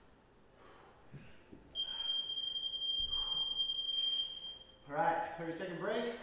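An electronic workout interval timer gives one long, steady, high beep of about three seconds, marking the end of a timed exercise period. Just after it, a man's voice is heard, breathing hard from the effort.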